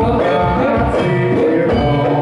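Amplified Javanese gamelan music for a warok dance: bronze metallophones and kettle gongs ringing in layered notes over a drum beat of about two strokes a second.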